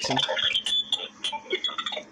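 Encrypted P25 digital radio traffic played through a speaker: choppy, irregular clicking and warbling with no intelligible voice, the sound of encrypted transmissions that cannot be decoded.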